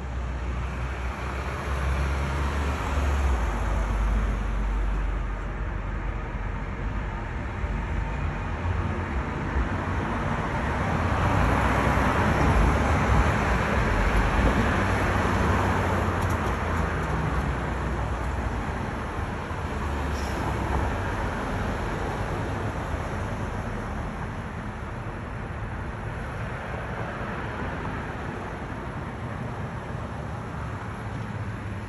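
City street traffic: a steady wash of passing cars over a low rumble, swelling as a car goes by about halfway through.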